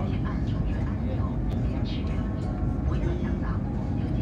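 Steady low rumble and hiss inside a CRH380A high-speed train carriage running at speed, with faint voices in the background.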